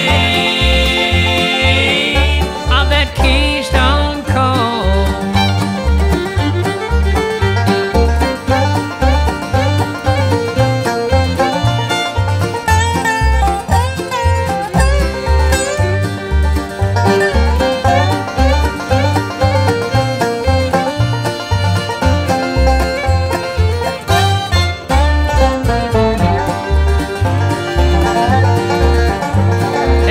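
Bluegrass band playing an instrumental break between verses: fast picked string lead lines over a steady, evenly pulsing bass beat.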